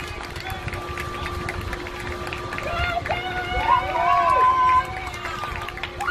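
Girls' high-pitched voices calling and shouting on a softball field, loudest about three to five seconds in, with a few sharp ticks and a steady faint hum underneath.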